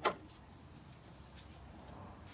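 A single short click right at the start, then faint room tone.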